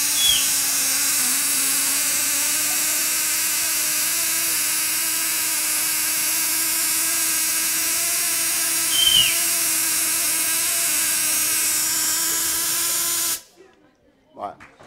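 Spark-gap Tesla coil running, a loud steady buzz of sparks streaming off its pointed terminal, which cuts off abruptly near the end.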